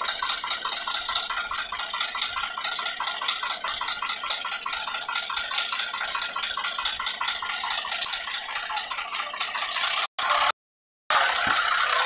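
Diesel tractor engines idling with a steady, fast rattling clatter. The sound cuts out twice briefly near the end.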